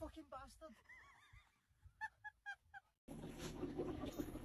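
A person's short, high-pitched frightened cries fade out just after a scream. About two seconds in come four quick high yelps in a row. The sound cuts off abruptly near the end and faint room noise follows.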